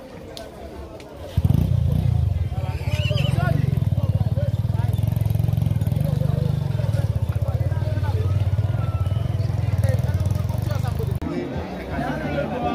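An engine running steadily close by, a low rumble that starts suddenly about a second in and cuts off near the end, over faint crowd voices.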